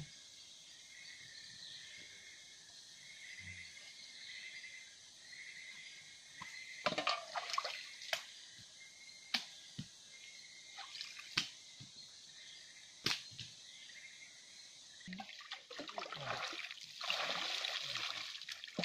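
Water splashing and dripping as a puppy is washed in a ditch with water from a bowl. At first it comes as scattered sharp splashes and drips, then turns into a denser run of pouring and splashing in the last few seconds as water is poured over the dog.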